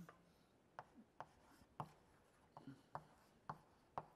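Chalk writing on a blackboard: faint, sharp, irregular taps, about eight in four seconds.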